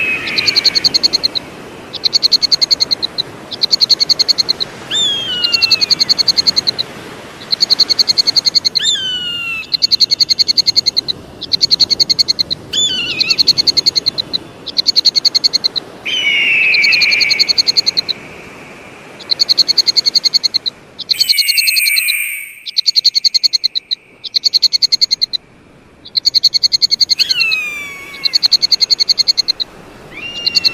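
An eagle giving about seven high whistled calls, each sliding downward in pitch, against a loud, buzzy pulsed trill that repeats in bursts of about a second throughout.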